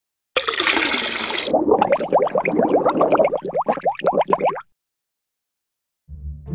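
An edited-in sound effect: a short rush of hiss, then a quick run of falling-pitch blips that stops suddenly about four and a half seconds in.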